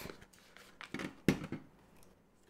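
A small cardboard product box being opened by hand and a touchscreen panel slid out onto a wooden table: a few short handling noises, the two clearest about a second in.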